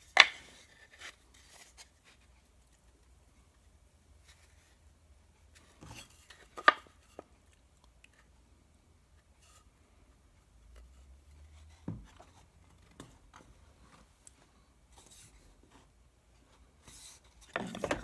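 Small plywood pieces handled and set down on a wooden workbench: a few short wood-on-wood knocks, one right at the start, two close together about a third of the way in and one about two-thirds in, with faint rubbing and long quiet stretches between.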